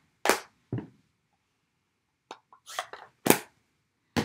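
About six short, sharp clacks and taps of craft supplies being handled and set down on a tabletop: two near the start, then a quick cluster in the last second and a half.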